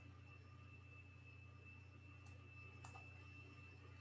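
Near silence: faint room tone with a steady high whine and low hum, and two faint clicks a little past halfway.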